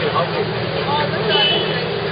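Busy street ambience: scattered chatter of passers-by over a steady low hum from a nearby motor vehicle's engine.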